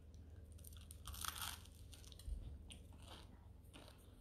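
Person crunching and chewing toasted bread crust, with a few crisp crunches, the loudest about a second in, over a low steady hum.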